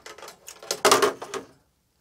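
A long metal rod being drawn out of a sheet-metal scanner frame, sliding and scraping against metal. The scrape is loudest about a second in, then dies away.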